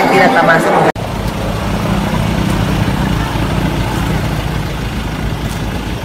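Car engine idling, a steady low rumble.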